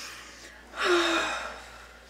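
A girl gasps sharply about three quarters of a second in: one short, breathy gasp with a brief catch in the voice at its start, fading out over about half a second.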